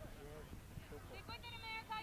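A high-pitched voice calling out across a soccer field, one long drawn-out call starting about halfway through, over faint outdoor background noise.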